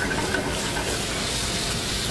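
Shallot and squeezed lemon juice sizzling in a hot frying pan, a steady hiss.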